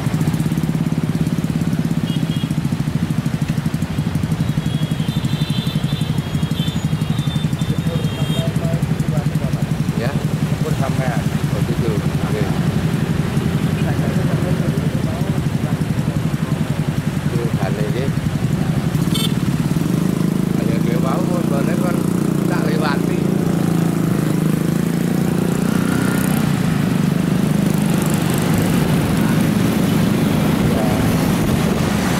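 Small motorcycle engines running steadily in a cluster of motorcycles waiting in traffic. The engine sound grows a little fuller about two-thirds of the way in as they start moving.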